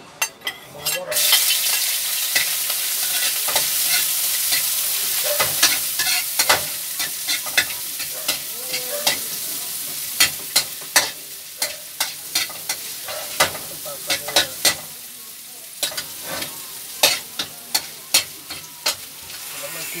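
Shredded cabbage stir-frying in a hot pan: a loud sizzle that starts suddenly about a second in and eases somewhat in the second half, with a metal spatula clicking and scraping against the pan many times as it is stirred.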